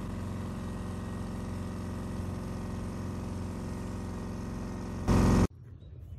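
An engine running steadily with an even, unchanging hum. About five seconds in, a man says "All" and the engine sound cuts off abruptly.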